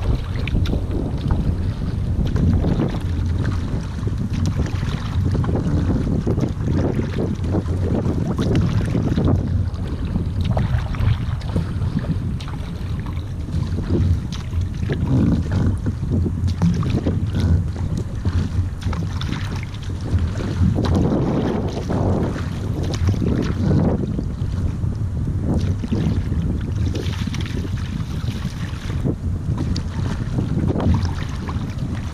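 Epic paddle blades splashing in and out of the water with each stroke of a surfski being paddled, under a steady rumble of wind on the microphone.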